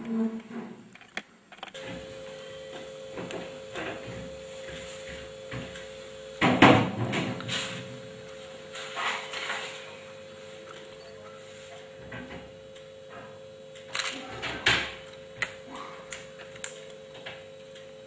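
Knocks and clatter of PVC kitchen cabinet doors being opened and handled, loudest about six and a half seconds in and again around fourteen to fifteen seconds in, over a steady hum.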